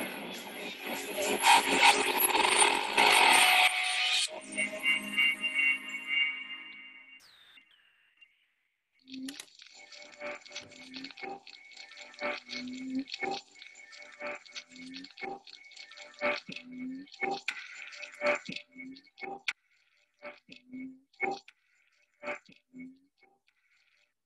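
Music from a YouTube video playing over computer speakers. A loud channel-intro sting fills the first four seconds and fades out. After a gap of about a second comes a sparse run of short notes at an uneven pace, which thins out toward the end.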